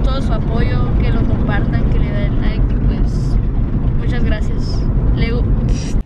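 Steady low rumble of a car's engine and road noise heard from inside the cabin, under a boy's talking; it cuts off suddenly at the end.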